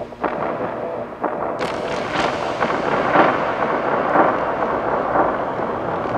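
Ambient noise improvisation from a guitar effects-pedal chain and a cassette recorder. Held tones give way about a second in to a dense, crackling, rumbling wash that swells and pulses roughly once a second, with scattered clicks.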